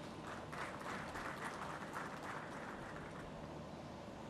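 Faint applause from a seated audience, a dense patter of clapping that fades away about three seconds in.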